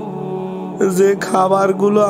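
A steady low drone of background music, with a man's voice speaking over it from just under a second in.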